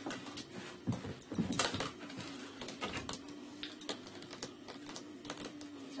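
Scattered light taps and clicks of a dog moving about a room, over a faint steady low tone.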